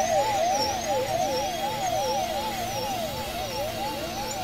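Two warbling electronic tones sweeping steadily up and down in pitch and crossing each other, about three rises and falls every two seconds, a siren-like warble over a steady hiss in an experimental noise mix.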